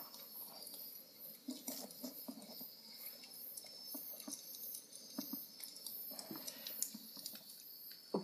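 Faint scattered ticks and light rustles, the handling noise of small objects being moved about, over a faint steady high hiss.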